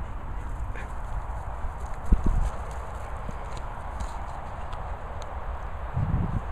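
Wind rumbling on the microphone with handling bumps, one louder thump about two seconds in.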